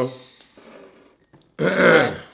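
A person clearing their throat once, a short rough rasp about one and a half seconds in.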